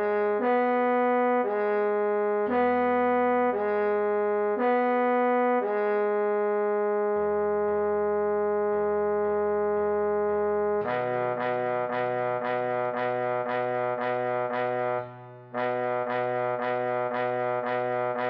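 Trombone playing a melody slowly at half speed over a backing track: a few short notes, one long held note, then a run of evenly repeated notes, about two a second, with a brief break late on.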